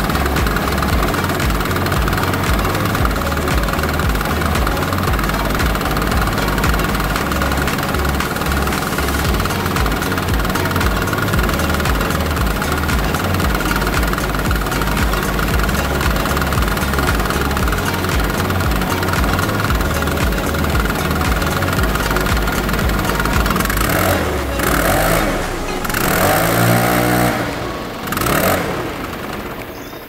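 Stihl BR 600 backpack blower's two-stroke engine running steadily, then revving up and down a few times near the end before its level drops away.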